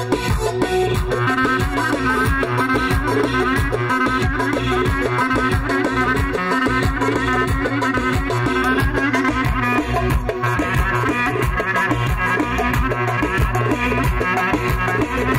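Lively dance music from a band, with a steady beat and a melody line over it.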